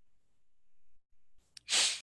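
Faint room tone, then near the end a small click followed by a short, loud burst of hissing noise that cuts off abruptly.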